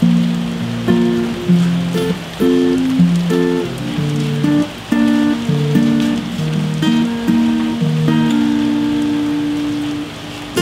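Yamaha steel-string acoustic guitar with a capo, notes and chords picked in a slow, even pattern, over a steady hiss of rain.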